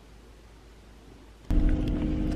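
Faint room tone, then about a second and a half in, a sudden cut to the low steady rumble and hum of a car heard from inside its cabin.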